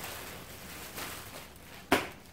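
Faint crinkling of a plastic clothing bag being handled, with one short sharp knock just before the end.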